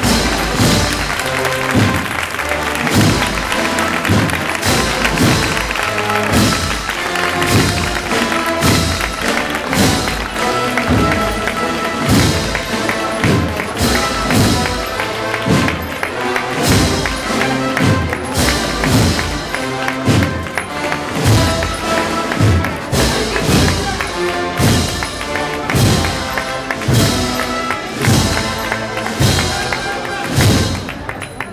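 A Spanish wind band, brass, woodwinds and drums, playing a slow Holy Week processional march, with regular drum strokes marking the beat about once every 0.7 seconds under sustained melody.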